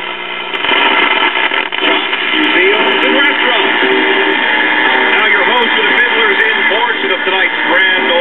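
Loudspeaker of a late-1940s GE five-tube AC/DC AM radio playing static with a steady hum, and from about two seconds in a broadcast announcer's voice coming through the noise. The hum sounds like a filter capacitor on its way out.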